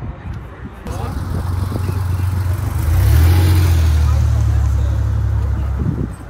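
Porsche 964-generation 911's air-cooled flat-six running as the car drives slowly past, a steady low engine note. It starts about a second in, grows louder around three seconds in and cuts off abruptly near the end.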